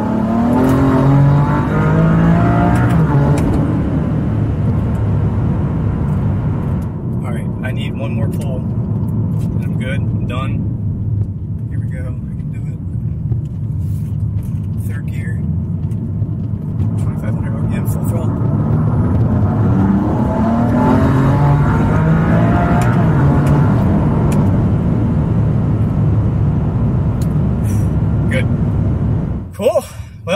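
BMW F80 M3's twin-turbo S55 inline-six, fitted with Pure Turbos upgrade turbochargers and methanol injection, accelerating hard in third gear, heard from inside the cabin. It rises in pitch through the first few seconds, eases, then climbs again from about 17 seconds in.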